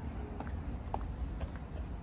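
Footsteps of hard-soled shoes clicking on pavement at a walking pace, about two steps a second, over a steady low rumble.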